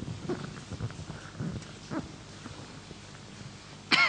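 Faint scattered knocks and rustles in a conference hall, then a sudden loud sharp pop just before the end that falls quickly away.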